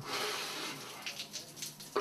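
Shower water running and splashing over a face and into a tiled shower stall, with an irregular spatter of sharper splashes in the second half.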